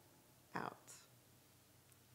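Near silence broken once, about half a second in, by a short, soft whispered vocal sound from a woman that ends in a brief hiss.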